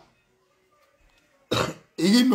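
A man coughs once, sharp and short, about one and a half seconds in, after a near-silent pause.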